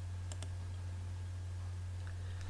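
Steady low hum with two quick, faint computer mouse clicks about a third of a second in.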